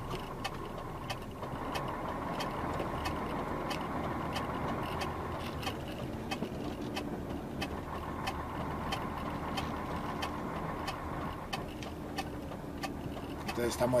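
Hazard-light flasher ticking steadily, about two ticks a second, inside a lorry's cab over the lorry's engine running as it manoeuvres slowly.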